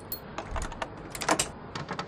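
An old metal key clicking and rattling: lifted off a hook, then slid into a door's keyhole, giving an irregular run of small sharp clicks, the loudest about halfway through.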